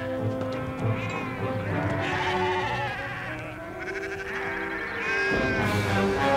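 Sheep bleating several times over background music with long held notes.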